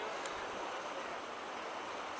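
Steady rush of white water running through the rapids below a spillway.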